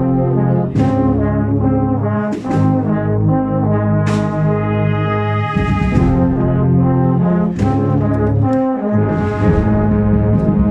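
An agrupación musical, a Spanish processional brass band of cornets, trumpets and trombones with drums, playing a processional march live. Sustained brass chords change every second or two, with a drum or cymbal stroke every couple of seconds.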